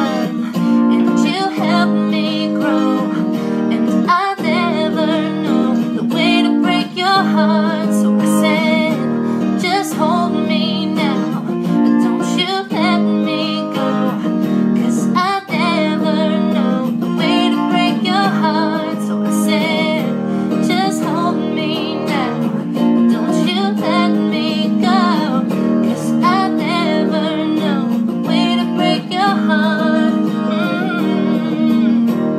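A woman singing a slow country-style song live over a recorded acoustic-guitar backing track, her voice wavering with vibrato throughout.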